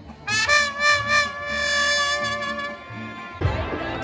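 Mariachi band holding one long sustained chord for about three seconds, cut off shortly before the end by a noisier, rumbling sound.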